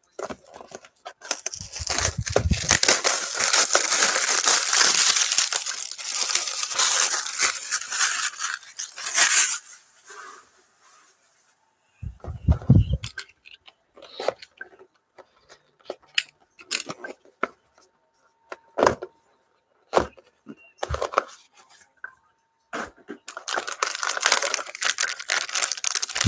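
Plastic shrink wrap being torn and peeled off a sealed trading-card box, a loud crackling tear lasting about nine seconds. Then a dull thump and scattered clicks as the cardboard box is opened and handled, and near the end the crinkle of a foil card pack.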